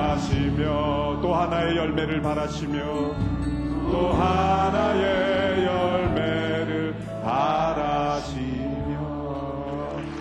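Korean worship song: singing in long, held, wavering notes over a steady low accompaniment.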